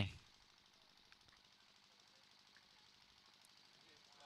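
Near silence: a pause in the commentary with no audible field sound.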